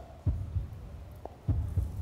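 Slow, dull low thumps in a heartbeat-like rhythm over a faint hum: one about a quarter second in, then a doubled beat about one and a half seconds in.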